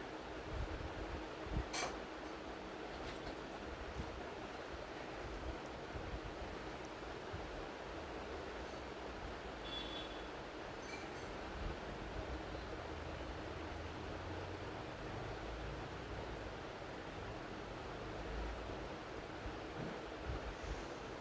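Steady background hiss and low hum from an open microphone, with a sharp click about two seconds in and a few faint ticks later.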